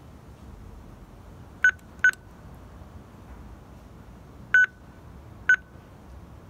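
Keypad of a Linear AE-100 telephone entry panel beeping as its buttons are pressed: four short beeps on one pitch, two in quick succession, then two more about a second apart near the end.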